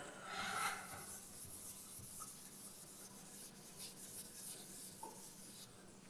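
Chalk writing on a blackboard: faint, intermittent scratching strokes, a little stronger in the first second, over a low steady room hum.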